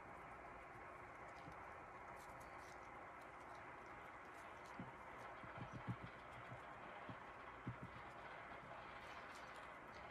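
Near silence: a steady faint hiss, with a few faint soft taps about five to six seconds in and again near eight seconds, from gloved hands working alcohol ink onto a tumbler with a felt pad.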